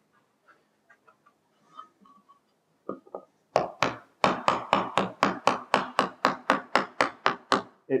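A mallet tapping the two boards of a through-dovetail joint together: faint handling sounds, then a steady run of light blows, about four or five a second, from about three and a half seconds in. The tight spots that the lead marked have been pared, and the joint is going together: it sounds better.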